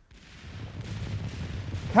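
Battle sound effect: a low rumble of distant artillery and gunfire fading in and growing steadily louder.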